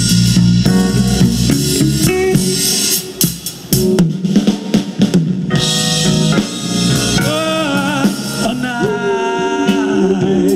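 A live soul band with drum kit and keyboards playing the opening of a slow vocal-group number: full held chords, a short break about three seconds in punctuated by snare and drum hits, then lead and harmony voices come in singing from about seven seconds in.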